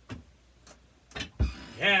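A few sharp clicks and knocks of handling, then a low thump about one and a half seconds in, as a player settles onto his stool with a cigar box guitar at a drum kit; a man's voice starts near the end.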